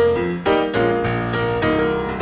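Acoustic piano playing struck chords and a few single notes between sung lines of a slow blues song.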